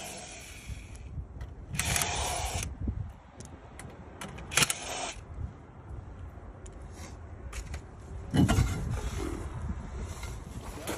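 Cordless impact wrench run in three short bursts to spin the lug nuts off a van wheel, with clinks and scrapes between the bursts.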